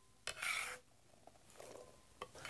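A short scraping rustle of cut potato and onion pieces being handled on a wooden cutting board beside a glass bowl, starting suddenly about a quarter second in and lasting about half a second, followed by faint handling noise.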